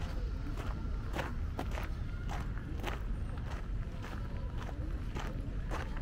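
Footsteps crunching on a gravel path at a steady walking pace, about two steps a second.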